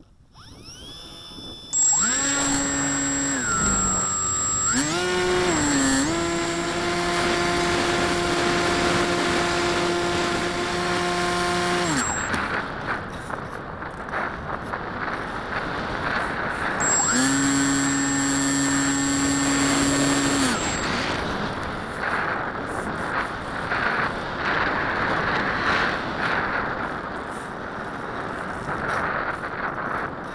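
Electric motor and propeller of a radio-controlled model plane, heard on board, whining up to power for the launch and climb, shifting pitch with the throttle, then cut off about twelve seconds in. Wind rushes over the airframe while it glides, and the motor runs again for about four seconds before cutting off, leaving wind noise alone.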